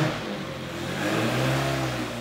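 1293cc BMC A-series four-cylinder historic racing engine running on a water-brake dyno. The revs drop away at the start, rise a little, then ease off again.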